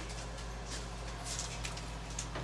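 A few light scratches and small pattering sounds from puppies moving about on the floor, over a steady low hum.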